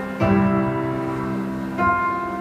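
Live piano accompaniment playing sustained chords in an instrumental gap between sung lines. A new chord is struck about a fifth of a second in and another near the end.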